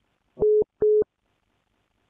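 Two short telephone beeps at the same mid pitch, about 0.4 s apart, each lasting a fifth of a second: a call-ended tone signalling that the other party has hung up.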